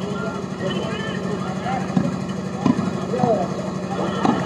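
Volleyball being struck during a rally, with sharp hits about two seconds in and again shortly after, over spectators and players talking and calling out and a steady low hum.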